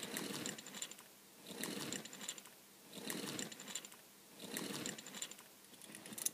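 Faint rustling and light clicks in short repeated bursts, about one every second and a half: handling and movement noise low over carpet.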